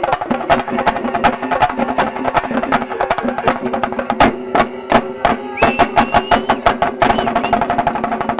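A Shinkarimelam ensemble of chenda drums beaten fast with sticks, together with hand cymbals, in a dense, driving rhythm. A high whistle sounds over the drumming about six seconds in.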